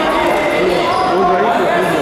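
Steady babble of many people talking at once in a large, echoing sports hall.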